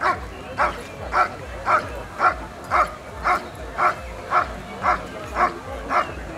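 German Shepherd barking at a helper in a bite sleeve in a steady, even rhythm of about two barks a second, the sustained guarding bark of a dog in IPO protection work.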